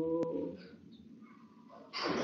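A chanting voice holds the last note of a Pali verse and fades out within the first half-second, with a single click, then near silence until speech starts at the very end.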